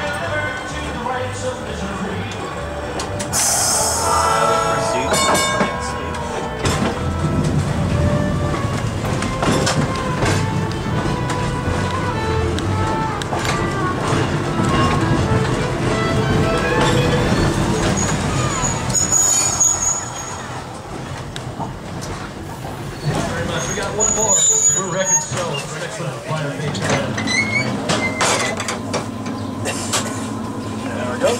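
Streetcar running sounds heard from inside a 1911 Huntington Standard streetcar rolling along its track, with brief high wheel squeals twice in the second half.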